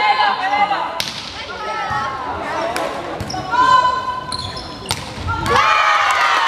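Volleyball rally on an indoor court: girls' voices shouting calls to each other, with one long call in the middle. Sharp knocks of the ball being hit come about a second in and again near the end, and there are brief high squeaks in between.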